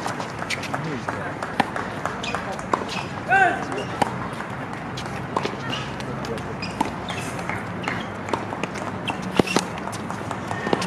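Tennis rally: rackets striking the ball, sharp hits coming about every second to second and a half, with running footsteps on the court. Voices in the background, with one short call a little over three seconds in.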